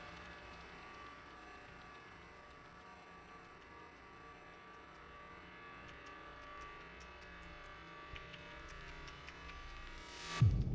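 A quiet passage of an electronic dubstep/IDM track: a faint steady hum with a held tone, and sparse small clicks that grow more frequent in the second half.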